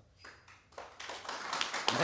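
Audience clapping that starts about a second in, after a short pause, and grows louder.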